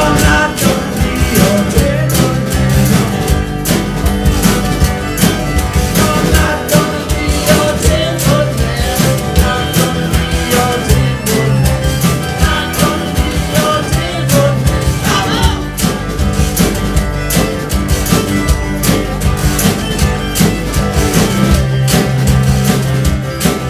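Live Americana band playing an up-tempo song: strummed acoustic guitar, fiddle, washboard and tambourine over a steady beat, with voices singing.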